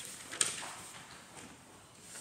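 A single short click about half a second in, then faint room hiss.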